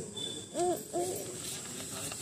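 Two short hooting calls, each rising then falling in pitch, about half a second apart.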